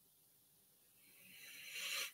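A long inhale through the nose that grows louder for most of a second and stops suddenly: a person sniffing red wine in the glass.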